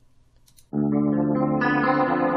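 Near silence, then about two-thirds of a second in, a soloed guitar track starts playing back in mono: sustained chords, growing brighter about a second and a half in.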